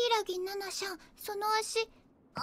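Only speech: a high-pitched girl's voice speaking one short line in two phrases.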